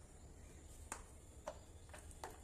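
Very quiet mopping on granite stairs. Two small sharp clicks come about a second in and half a second later, as the spin mop's plastic head knocks the stone steps.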